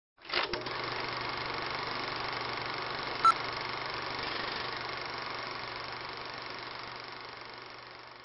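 Film projector sound effect: a steady mechanical whirring with a fine rapid flutter, starting with a few clicks. A short beep comes about three seconds in, and the running sound slowly fades near the end.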